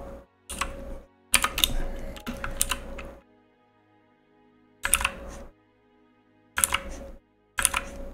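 Computer keyboard keys clicking in five short clusters, separated by pauses, over faint background music.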